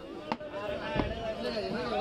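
Large butcher's chopping knife striking raw beef on a wooden chopping block: two chops, the second one, about a second in, the louder, with voices chattering around it.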